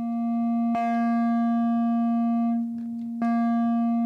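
Modular synthesizer oscillator (Frap Tools BRENSO) sounding a steady low tone through its wave folder, modulated by a FALISTRI envelope. At each envelope stroke the tone turns bright and buzzy, then mellows. This happens twice: about a second in, and again past three seconds.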